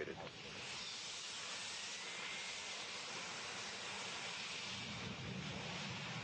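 Steady hiss of carbon dioxide quench gas being blown into the burned-out solid rocket booster, forward and aft, to put out the residual burning after the static firing. The hiss swells about half a second in, then holds even.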